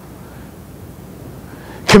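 A pause in a man's speech: faint, steady room tone, with his voice starting again just before the end.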